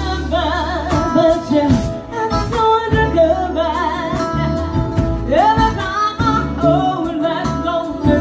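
Live band performing: a woman singing lead, her voice wavering with vibrato, over electric bass, electric guitar and a drum kit.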